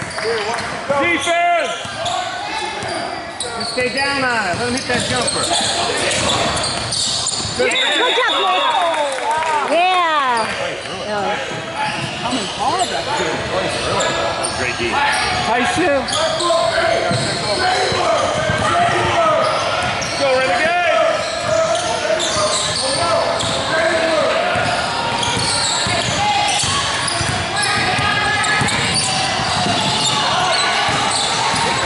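Basketball game on a hardwood court in a large echoing gym: indistinct shouts and chatter from players and spectators, with a ball bouncing on the floor. A short high referee's whistle sounds about eight seconds in.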